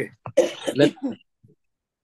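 A woman clearing her throat and coughing: a quick run of short, loud bursts in the first second or so, then a few faint ones.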